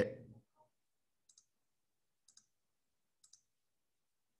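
Three faint, sharp clicks about a second apart, each a quick double tick, over a quiet room.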